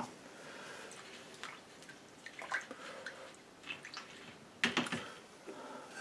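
Faint water sounds, light splashing and dripping, with a few soft scattered ticks.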